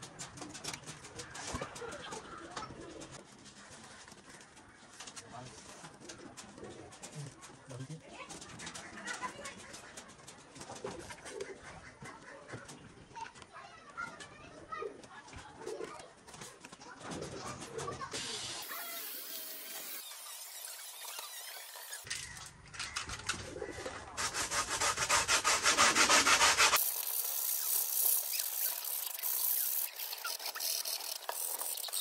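Hands handling and rubbing a foam RC plane wing, with scattered light scuffs and rustles. Near the end comes a louder stretch of dense, rasping rubbing on the foam lasting about three seconds.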